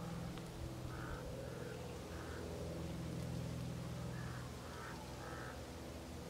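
Bird calls in two runs of three short calls each, the first run about a second in and the second about four seconds in, over a low steady hum.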